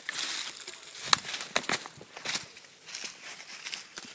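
Footsteps crunching through dry fallen leaves, an irregular run of crackles and rustles with the sharpest crunch about a second in.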